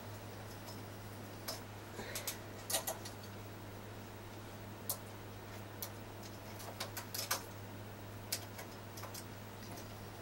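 Scattered, irregular small clicks and ticks of a hand transfer tool and latch needles as stitches are moved between needles on a Singer Mod 155 knitting machine's metal needle bed, over a steady low hum.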